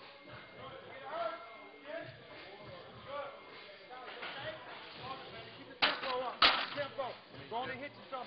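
Two sharp smacks a little over half a second apart, the loudest sounds here, over background voices talking.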